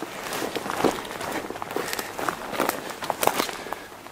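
Footsteps crunching through dead twigs and dry undergrowth on a pine-wood floor: an irregular run of crackles and rustles.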